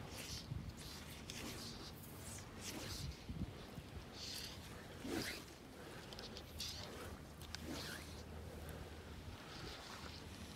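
Fly line being stripped in by hand through the rod guides on a slow retrieve: a string of short, quiet, zipping swishes at irregular intervals, about one a second.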